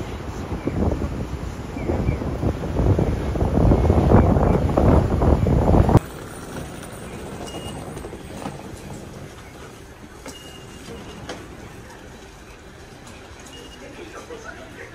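City street traffic, building to a loud rumble of a heavy vehicle passing close. The sound then cuts abruptly about six seconds in to the quiet steady hum of an underground station, with a few faint short high tones.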